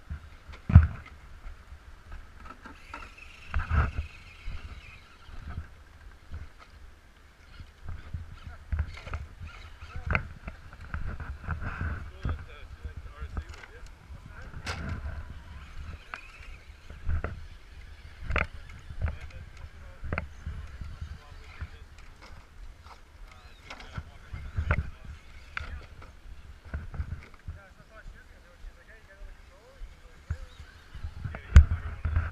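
Electric radio-controlled rock crawler climbing bare granite: a thin whine from its motor and gears comes and goes, over irregular knocks and scrapes of tyres and chassis on the rock. A steady low rumble runs underneath.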